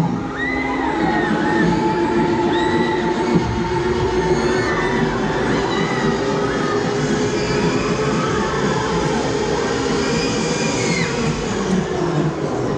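Loud fairground ride music as a Huss Break Dance spins, with riders shouting and screaming over it again and again.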